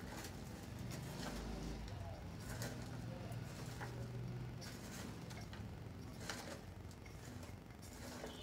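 Hands mixing chopped raw cauliflower, onion and green chilli in a steel bowl: faint, irregular rustling with small clicks as the pieces are tossed and fingers brush the bowl, over a low steady hum.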